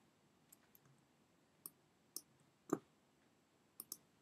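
Sparse clicks of a computer keyboard and mouse while code is edited: about seven short clicks spread irregularly, the loudest near the middle and a quick pair near the end.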